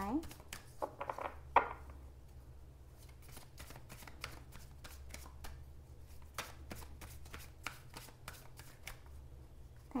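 Tarot cards being shuffled by hand: a steady run of light card clicks and slaps, several a second.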